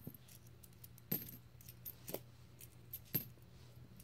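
Loose pennies clinking faintly as they are handled and sorted from opened coin rolls: a few scattered clicks, the clearest about one, two and three seconds in.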